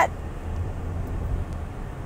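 A low, steady hum from a car, heard inside its cabin.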